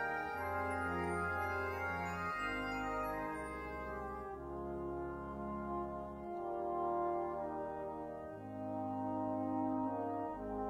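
Computer playback from Sibelius notation software of a brass band score in G-flat major: slow, sustained brass chords carrying a horn melody over low bass notes that change every second or two.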